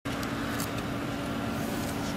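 Engines of a slow-moving column of police vehicles running, a steady hum over even outdoor noise.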